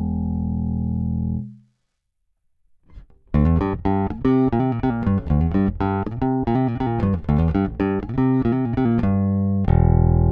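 Electric bass with Ernie Ball Cobalt flatwound strings, played clean straight into an audio interface. A held note rings and fades out in the first second and a half. After a short silence, a fast riff of plucked notes starts about three seconds in and ends on a ringing held note near the end.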